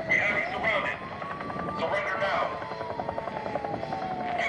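Electronic sound effects played through the ensemble's speaker system: a steady tone that slowly falls and then rises again, a fast even chopping pulse in the middle, and fragments of a processed voice.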